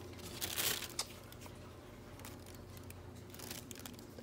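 Tissue paper and a cloth drawstring dust bag rustling and crinkling as a slide is unwrapped from its packaging, loudest in the first second, then faint crinkles.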